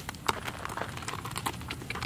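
A horse being led at a walk, with its handler, over a dirt track: irregular sharp clicks and crunches of hooves and footsteps, several a second.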